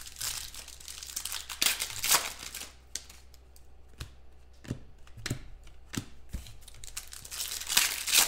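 Foil trading-card pack wrapper crinkling and tearing open in the hands, with a handful of short sharp clicks in the quieter middle stretch as cards are handled.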